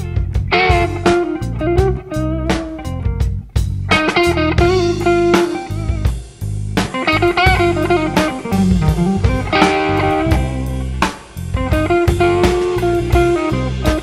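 Blues song with an instrumental stretch: electric guitar playing a lead line with bent, wavering notes over bass and drums.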